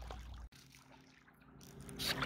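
Faint low rumble of outdoor background noise that cuts off abruptly about half a second in, then near silence with a faint low hum.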